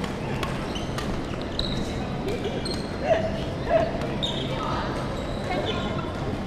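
Reverberant badminton hall: sports shoes squeaking on the wooden court floor and the sharp pops of rackets hitting shuttlecocks, with voices in the background. Two short louder sounds come about halfway through.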